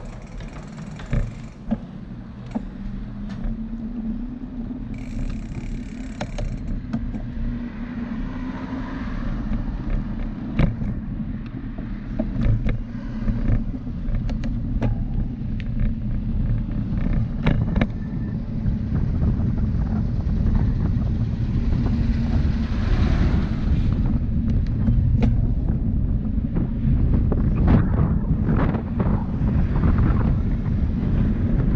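Wind buffeting the microphone of a handlebar-mounted camera on a moving bicycle, with a low rumble of tyres on paving and asphalt that grows louder as the bike picks up speed. Frequent short knocks and rattles from bumps in the surface run through it.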